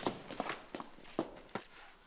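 A few footsteps on a hard floor, irregular and getting quieter.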